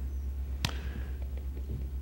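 A steady low hum with a single sharp tap about two-thirds of a second in.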